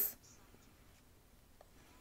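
Near silence: a pause between a speaker's phrases, with the end of a spoken word in the first instant.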